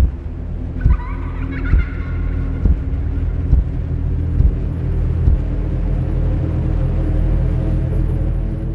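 Horror-trailer sound design: a deep rumbling drone struck by booming hits about once a second for the first five seconds or so, with a brief warbling screech about a second in. After that the drone holds steady.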